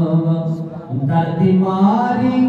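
A man singing a Saraiki Sufi kalam into a microphone, in long held notes, with a brief break for breath a little before the middle and a rising phrase after it.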